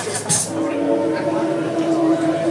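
Playback backing track: a dance beat cuts off about half a second in, giving way to a long held tone of several steady pitches.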